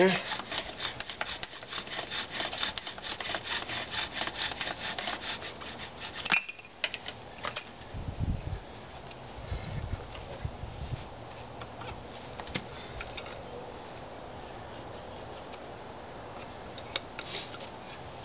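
Bow drill in use: the wooden spindle grinding in the fireboard's burned-in hole under rapid back-and-forth bow strokes, which stop suddenly about six seconds in. After that come a few knocks and handling sounds as the bow is set down, then only a steady low background.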